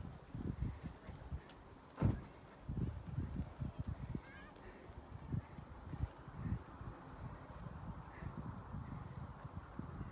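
Wind buffeting a phone microphone in gusty low rumbles, with one sharp knock about two seconds in.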